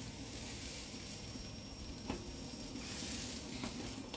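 Oiled bread rolls sizzling on the hot grate of a gas barbecue as they are turned over by hand, with a light knock about two seconds in.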